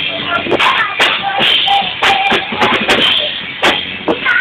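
A live rock band playing loud, with sharp drum and cymbal hits several times a second over sustained guitar tones. It is captured on a mobile phone's microphone, so the sound is cut off in the highs.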